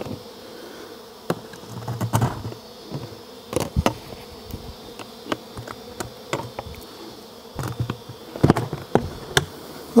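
Honey bees buzzing in a steady faint hum, broken by scattered sharp knocks and clicks from plastic buckets and their lids being handled.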